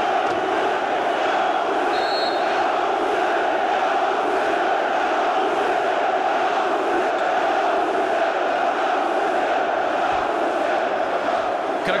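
Large basketball-arena crowd chanting and shouting in a steady, unbroken din.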